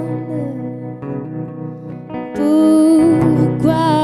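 Slow, gentle live song: a hollow-body electric guitar plays steady notes, and a woman's voice comes in a little past halfway with a held, wordless sung phrase that is the loudest part.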